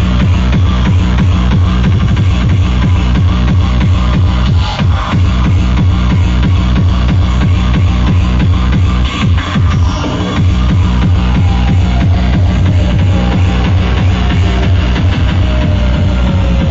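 Hardcore gabber DJ set over a large sound system: a fast, heavy distorted kick drum with synth lines that glide downward in pitch. The music dips briefly a little before the middle and again just past it.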